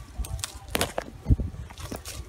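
A few scattered knocks, scrapes and clicks, with a low thud about a second in, as someone climbs a tree: shoes and hands against bark and thin branches.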